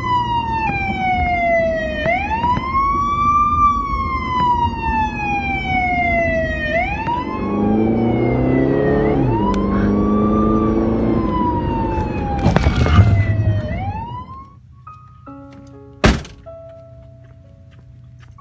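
Emergency vehicle siren wailing, its pitch repeatedly sliding down and sweeping back up, with a second, lower siren sounding over it for a few seconds midway. About 13 seconds in comes a short loud burst of noise, then the siren stops and it goes much quieter, with soft music notes and one sharp click.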